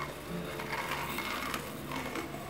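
Kick scooter's wheels rolling on asphalt: an even rolling noise.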